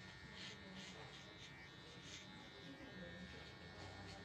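Faint steady buzz of a cordless hair trimmer running as it cuts around the ear.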